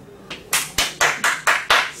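Hand claps: about six quick, evenly spaced claps starting about half a second in.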